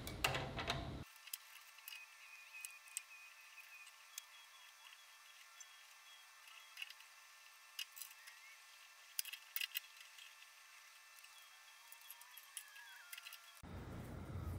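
Faint, scattered metallic clicks, about a dozen of them, irregularly spaced, as a tap held in a T-handle tap wrench is turned into a hole in a metal block, cutting threads.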